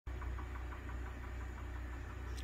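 A steady, low mechanical hum.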